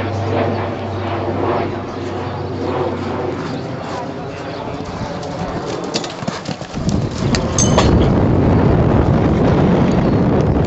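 A horse cantering on a sand arena and jumping a showjumping fence, its hooves thudding in a quick cluster of knocks about six to seven seconds in. Wind then rumbles on the microphone.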